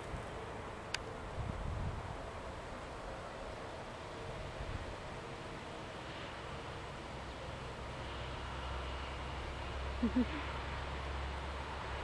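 Wind buffeting a handheld camera's microphone: a low rumble over faint outdoor ambience that grows stronger near the end, with one faint click about a second in.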